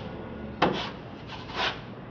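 Steel broad knife spreading and scraping drywall joint compound across a plasterboard patch. A sharp tap comes just over half a second in, followed by a rasping scrape stroke after about a second and a half.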